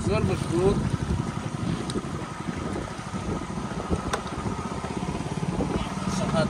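Wooden river boat's engine running steadily, a fast even pulse that carries on throughout as the boat is under way. A voice is heard briefly at the start.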